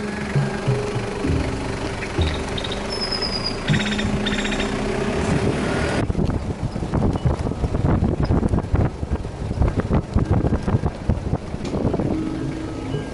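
Background music with held notes for about six seconds. Then an abrupt change to rough, rapid buffeting of wind on the microphone, with road noise, from a moving car.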